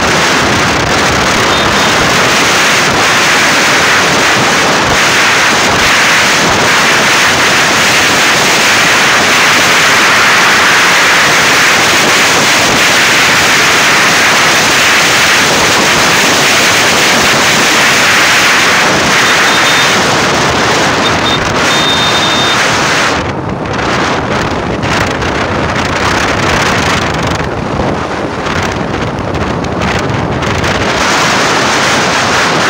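Wind rushing over the microphone of a moving motorcycle, a loud steady noise that buries any engine note. About three quarters of the way through it drops a little and turns choppier.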